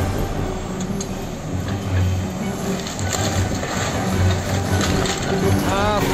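Wheeled excavator demolishing an old brick house: its diesel engine runs with a low rumble that swells twice, while the bucket crunches through the walls and rubble falls with scattered knocks and clinks.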